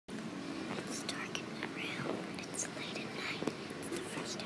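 Young voices whispering the words of a story very softly, at pianissimo.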